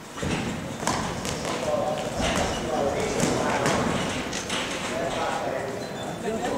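Boxing gloves landing with a series of sharp, irregular thuds during an exchange of punches, with voices shouting in the hall over them.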